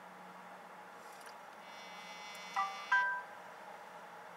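Two quick chime notes about half a second apart, each ringing briefly and fading, over a faint steady background hum.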